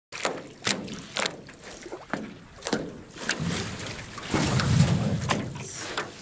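Aluminium canoe being paddled close by: a string of sharp knocks and splashes from the paddle strokes, with a louder stretch of rushing noise in the middle as the canoe comes in.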